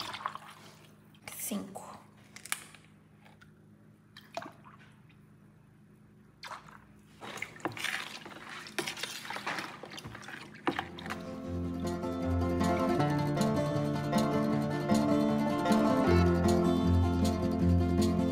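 Small handling sounds of fragrance essence being poured from a small bottle into a plastic bucket of diffuser base and stirred, with light clicks and drips. About eleven seconds in, instrumental background music with a steady, repeating bass line starts and becomes the loudest sound.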